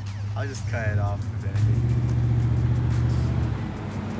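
A motor vehicle's engine rumbling steadily, growing louder about a second and a half in and stopping shortly before the end, with a brief voice-like sound near the start.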